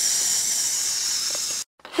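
A steady, mostly high-pitched hiss that cuts off abruptly near the end.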